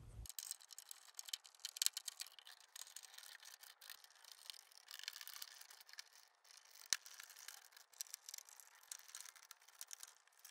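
Faint clicks and light scraping from a hand screwdriver driving screws as servo drives are fastened to a panel, with one sharper click about seven seconds in.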